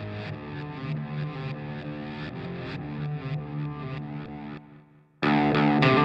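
Rock song intro: an electric guitar run through effects plays a repeated figure, about four strokes a second. It breaks off about four and a half seconds in, and after a brief gap the band comes in much louder.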